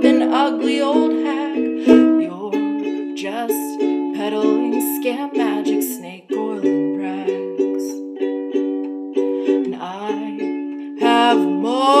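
Ukulele strummed and picked in a steady accompaniment, with a woman singing over it.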